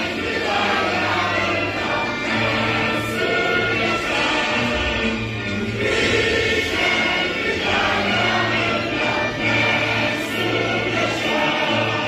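A school choir of teenage boys and girls singing a song together, with steady low instrumental accompaniment underneath.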